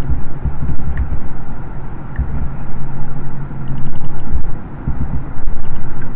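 An uneven low rumble with a steady low hum under it, and a few faint clicks about two-thirds of the way through.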